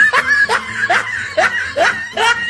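Inserted laugh-track laughter after a joke's punchline: one voice laughing in quick short bursts, about two or three a second, each rising in pitch.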